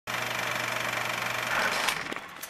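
Film projector sound effect: a steady, fast mechanical clatter with a low hum beneath it that drops out about three-quarters of the way in.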